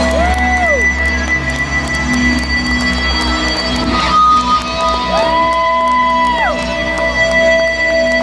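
Live rock band through a large PA, with electric guitar notes that bend up and down over a steady droning chord.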